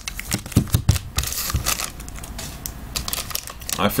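Foil trading-card packs being handled on a table: a quick run of light clicks and taps in the first second and a half, with foil wrappers crinkling.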